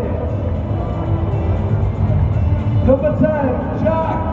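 A stadium public-address announcer's voice reading out the lineup over loud introduction music with a deep, steady bass.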